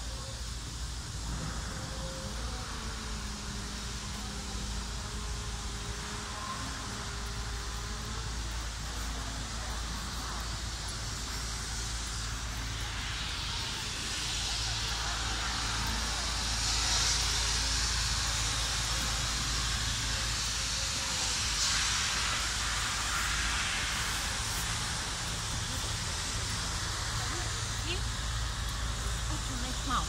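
Outdoor ambience: a steady low rumble with faint distant voices early on, and a louder hiss that swells up for about ten seconds in the middle and then eases.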